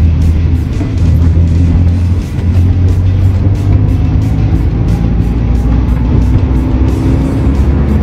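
Manual car's engine pulling in third gear, its pitch slowly rising as the revs climb from about 1,000 to 2,000 rpm, heard under steady background music.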